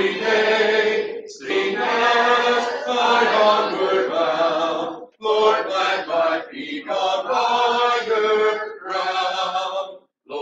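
Congregation singing a hymn unaccompanied, in sustained phrases with brief breaths between them, about a second in, at five seconds and near nine seconds.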